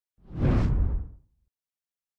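A single deep whoosh sound effect that swells in and dies away within about a second.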